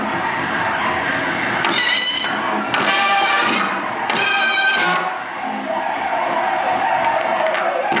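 Loud live breakcore/noise electronic music played through a sound system: a dense, continuous wall of distorted noise, with blocks of high squealing pitched tones about two, three and four seconds in.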